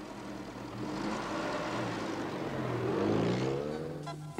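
Car engine driving along, its pitch rising as it speeds up and getting louder toward the end.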